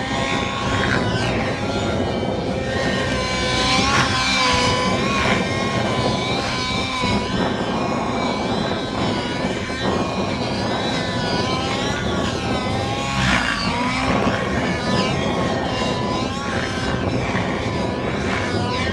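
Radio-controlled model aircraft engine buzzing as the plane flies around, its pitch repeatedly rising and falling as it passes.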